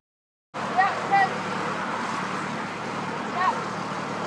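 After a brief silent gap, a steady engine hum with a rushing noise over it comes in about half a second in, and a few short chirps sound over it.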